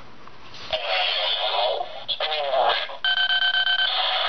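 Bandai DX Chalice Rouzer toy buckle playing its electronic sound effects through a small, tinny speaker as a card is swiped through it. An electronic effect comes first, then a short recorded voice call for the "Spinning Wave" combo, then a steady electronic tone in the last second.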